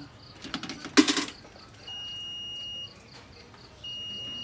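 Coin-operated water-vending machine: a five-peso coin clatters through the coin acceptor about a second in. Then the machine sounds a steady, high electronic beep about a second long, repeating two seconds later, as it registers the coin and starts dispensing.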